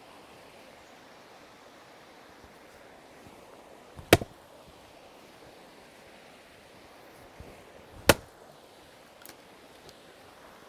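Splitting maul striking a Douglas fir round on a chopping block: two sharp hits about four seconds apart, the second at about eight seconds in, with a faint knock near the end. By the second strike the round is cracking open.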